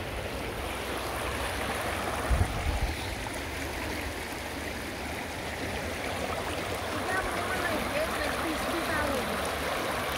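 River water rushing steadily over rocks in shallow rapids, with a brief low thump about two and a half seconds in. Faint distant voices come in near the end.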